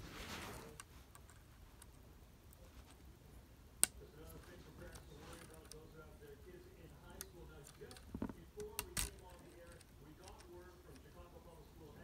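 Plastic building-brick toy pieces being handled and pressed together as a claw arm is fitted back onto a toy tractor: faint handling noise with a few sharp clicks, one about four seconds in and a short cluster around nine seconds.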